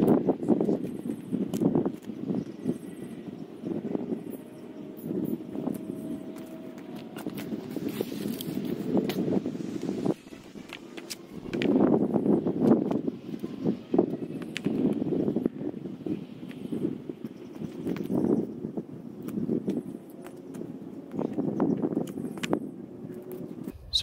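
Footsteps and rustling in dry, matted grass and brush, with a few light knocks, as bent metal conduit hoops are handled and pushed into the ground. The sound comes in uneven swells, loudest a little after the middle.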